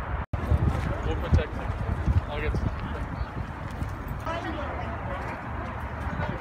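Wind buffeting a phone microphone in an open field, with people talking indistinctly in the background. A split-second dropout comes near the start.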